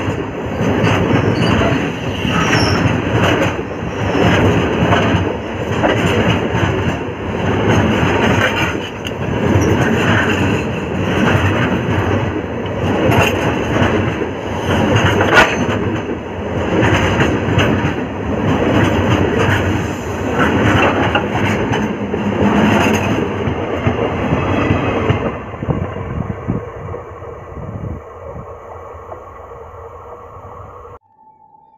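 Loaded BOXN freight wagons rolling directly over the camera between the rails: steel wheels clattering on the track, with the noise swelling about every two seconds as each wagon's bogies pass overhead and sharp clicks in between. The noise dies away over the last few seconds as the end of the train passes.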